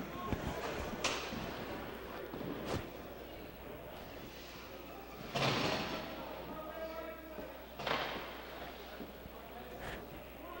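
Ice hockey rink sounds between plays: a few sharp knocks in the first three seconds, as of sticks or the puck on ice and boards, then two hissing skate scrapes on the ice about five and a half and eight seconds in, over faint players' voices in the arena.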